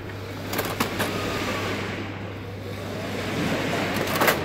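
Sharp plastic clicks and knocks as the rear duplex-unit cover of a laser printer is unlatched and swung open, a cluster of clicks about half a second in and another near the end, over a steady low hum.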